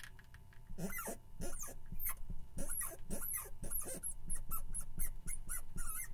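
Chalk writing on a blackboard: a quick run of short taps and high squeaks, one per stroke, as a number and a word are written out.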